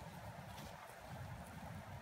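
Wind on the microphone: a steady, uneven low rumble with a faint hiss, and a few faint soft ticks.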